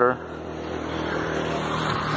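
Rushing noise of wind and tyres from a bicycle rolling along asphalt, gradually getting louder.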